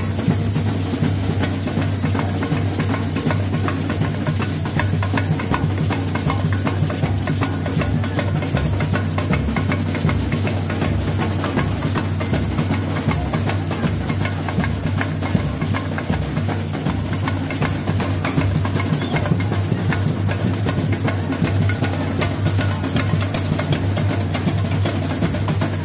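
A samba bateria playing live: surdo bass drums, snare drums and tamborins in a steady, dense samba rhythm with strong low beats.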